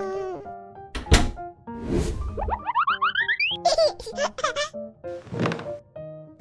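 Cartoon sound effects over light children's background music: a sharp thunk about a second in, a swish, then a quick run of rising glides and a rapid clatter of short chirps, and another swish near the end.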